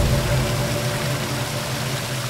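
A steady low drone with a hiss and faint held tones from a dramatic background score, slowly getting quieter.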